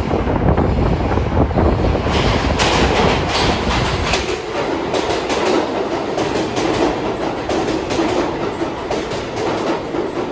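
New York City subway train running into the station past the platform, with a heavy rumble that eases after a few seconds. From about two seconds in, a quick run of clicks from the wheels going over the rail joints as the cars go by.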